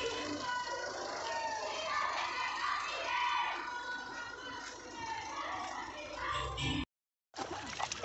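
Several people's voices talking and calling out over music playing; the sound cuts out completely for a moment near the end.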